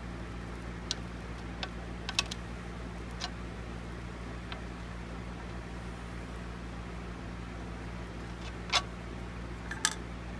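Small clicks and taps as a wooden dowel presses and flattens wet, glue-soaked sinew along the wooden back of an Osage orange bow, over a steady low electrical hum; a couple of sharper clicks come near the end as the hand moves away.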